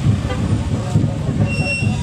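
Motorcycle engines running in slow street traffic, with a short high-pitched beep near the end.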